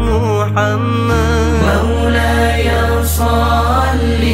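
Sholawat, an Islamic devotional song praising the Prophet Muhammad, sung by a group of voices with wavering held notes over arranged backing music. Steady low bass notes sit beneath, changing pitch about a second in.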